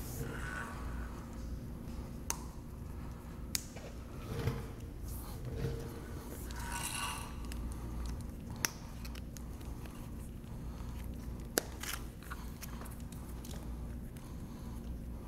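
Handling noise of clips being fitted onto hoses and a pump power cable: a few sharp separate clicks, with a rustling scrape about halfway through, over a steady low hum.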